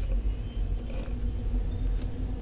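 Steady low rumble and faint hum of background noise on the recording, with a couple of faint clicks, one at the start and one about a second in.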